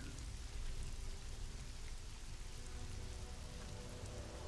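Faint ambient background music, low sustained tones under a steady even hiss.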